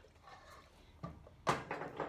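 A sharp knock of kitchenware set down on the stone countertop about one and a half seconds in, with a lighter click just before it.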